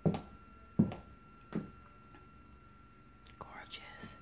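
Footsteps on a hard floor at a steady walking pace, three clear steps then a softer one. A faint hissy rustle near the end.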